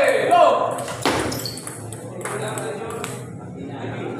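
A table tennis ball knocking sharply off bat and table in a few separate clicks, with a loud shout at the start.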